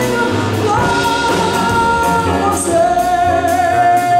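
Female jazz vocalist singing with piano, double bass and drum kit accompaniment, cymbals keeping a steady beat. She holds a long note starting about three seconds in.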